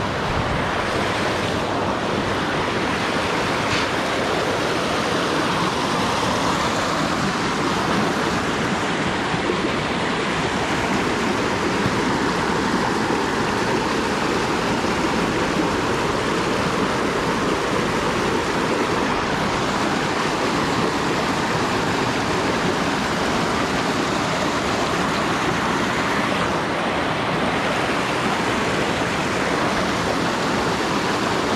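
Creek water rushing over rocks in a small cascade, a loud, steady hiss of running whitewater.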